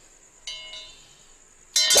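A single bell-like metallic ring about half a second in, dying away over about a second. Near the end a loud yell breaks in over a burst of ringing, clinking metal.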